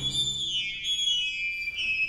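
Contemporary chamber music in a sparse passage: after the full ensemble breaks off, a thin, high sustained tone holds, with fainter high pitches gliding downward above it.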